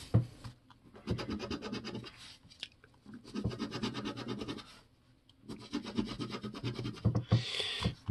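A coin scraping the scratch-off coating from a lottery ticket in three bursts of rapid back-and-forth strokes, with short pauses between them.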